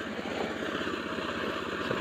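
An engine running steadily at a constant speed, with a fast, even pulse under a broad hiss.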